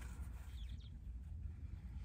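Quiet, steady low rumble in a parked car's cabin, with faint rustling as a small plush toy is handled.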